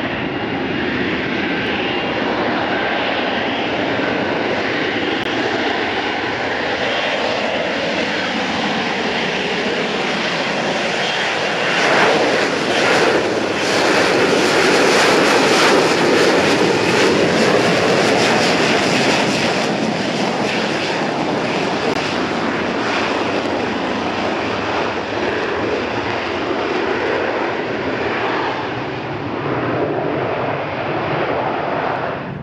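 F-35B fighter flying slowly in STOVL mode on its jet engine and lift fan: a continuous, loud jet noise that swells to its loudest and harshest about midway as the jet passes closest, then eases off again.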